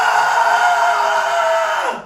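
A man's long, held, high-pitched yell on one steady note that cuts off just before the end.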